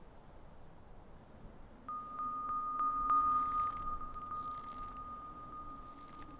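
A single steady high tone, with a faint low hum beneath it, comes in suddenly about two seconds in, swells and then slowly fades.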